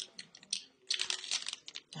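Plastic snack bag crinkling as it is handled, a quick run of crackles starting about half a second in.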